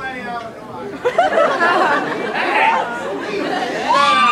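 Concert crowd chattering, many voices talking over one another with no music playing.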